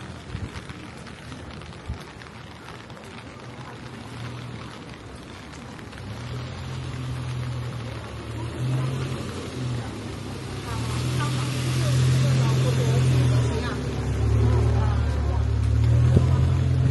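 A minivan's engine running at low speed as the van comes up the narrow street and passes close by; its low hum starts about six seconds in and grows louder through the second half.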